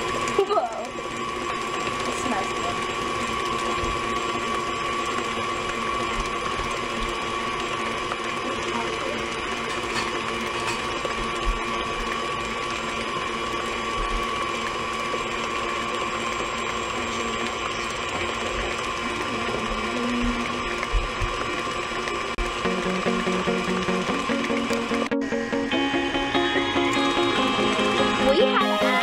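KitchenAid Artisan tilt-head stand mixer running steadily as it beats cake batter in its steel bowl, a constant motor hum with a steady high tone. Background music comes in near the end.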